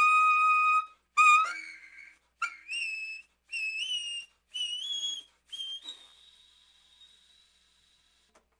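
Baritone saxophone played in its extreme high register: a series of short, very high notes in separate phrases, each bending upward and growing gradually quieter. The last note, about six seconds in, is held and fades away.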